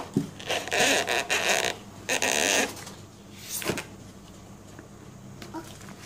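Books being slid and lifted out of a cardboard box, rustling and scraping against each other and the box in two spells, about half a second in and about two seconds in, with a single knock near four seconds.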